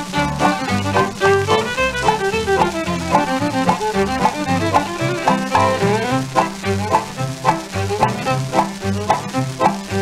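Instrumental break of a 1940s western song played from a 78 rpm record: a small band playing a melody over a steady, even beat.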